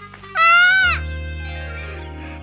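A small child's short, high cry, rising then sliding down in pitch and lasting about half a second, over steady background music.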